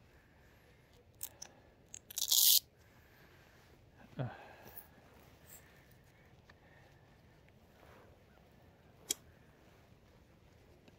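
Dry grass and brush scraping and crackling against the e-bike and camera while riding through tall grass. Scattered sharp clicks, a brief loud rustle a little over two seconds in, and a short downward-sliding tone about four seconds in.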